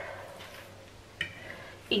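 A fork pressing down the edges of puff pastry on a wooden cutting board, faint, with one short high squeak about a second in. A woman's voice trails off at the start and resumes at the end.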